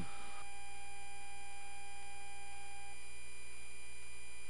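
Steady electrical hum with several faint steady tones over a low hiss, the cockpit's background on the crew audio during the approach; one faint tone stops about three seconds in.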